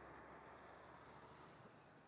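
Near silence: a faint, steady background hiss that fades slowly.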